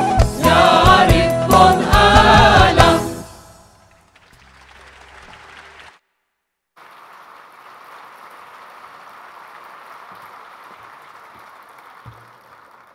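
A mixed choir with guitar, bass guitar and hand-drum accompaniment sings the closing phrase of a song, ending about three seconds in. After the music dies away, an audience applauds steadily, with a brief dropout in the sound around the middle.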